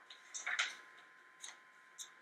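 Sheets of paper being handled at a lectern: a few short, faint rustles and clicks, a small cluster about half a second in and single clicks later.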